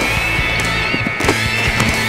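Rock background music, with a high lead-guitar note held and wavering with vibrato, and a few short knocks underneath.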